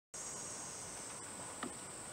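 Faint, steady, high-pitched chorus of insects, with a brief soft knock about one and a half seconds in.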